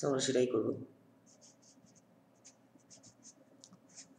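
A red marker pen writing on paper: a string of short, faint strokes, about three a second, as the letters of an equation are drawn.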